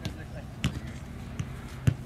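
Footballs being kicked and juggled on grass: about four short thuds of foot on ball, the loudest near the end.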